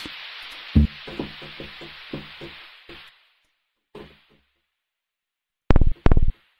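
Electronic synth sounds played from a music-production setup: a run of short pitched notes under a fading high hiss, dying away about three seconds in. Near the end a loud, deep synth bass note starts as a new bass sound is auditioned.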